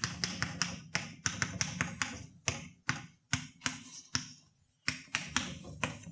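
Chalk on a blackboard while an equation is written: a quick irregular series of sharp taps and short scratches, a few each second, with a brief pause a little past the middle.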